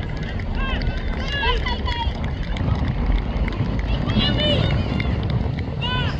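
High-pitched shouts and calls from young rugby players and sideline voices, in bursts about a second in and again around four seconds in, over a constant low rumble of wind on the microphone.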